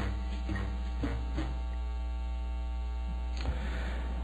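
Steady electrical mains hum on the recording: a constant low drone with evenly spaced overtones.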